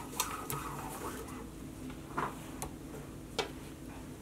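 Quiet handling of nylon paracord as it is pulled through a braid: a few light clicks and soft brief swishes of cord sliding.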